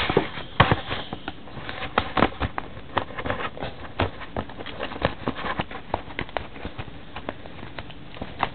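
A hockey-card box's packaging being handled and opened by hand: irregular taps, clicks and scrapes, several a second.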